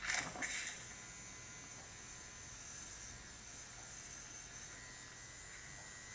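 Electric hair clippers running with a faint, steady buzz, getting slightly brighter near the end.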